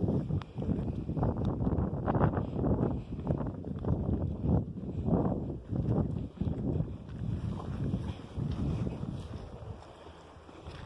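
Wind buffeting the phone microphone in irregular low rumbling gusts, with brushing through tall grass as the person filming walks. The gusts ease near the end.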